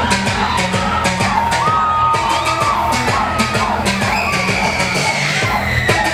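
Electronic dance music from a DJ set, played loud over a sound system with a steady beat and bass line, with shouts from the crowd over it.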